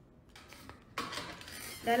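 Handling noise from a phone being moved and set back in place: a faint rustle, then a sudden clatter and scraping about a second in. A woman starts speaking near the end.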